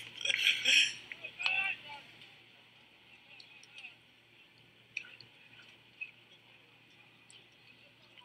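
A commentator's voice for about the first two seconds, then a low broadcast background with a faint steady hum and a couple of faint clicks.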